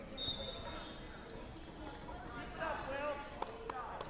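Referee's whistle, one short blast just after the start, stopping the wrestling on the mat so the wrestlers come back up to their feet. Voices echo in a large hall, and two sharp knocks follow near the end.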